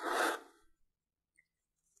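A paper towel rustling briefly as it is pulled and torn off, a short burst of about half a second at the start.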